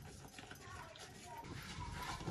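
Faint trickle of water poured from a small enamel basin onto flour in a large earthenware bowl, with soft stirring as the flour is mixed into dough.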